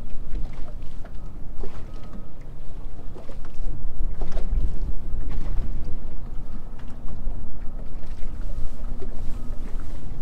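Wind buffeting the microphone in a heavy, uneven rumble, with water lapping against the hull of a small fishing boat on choppy water and a faint steady hum underneath.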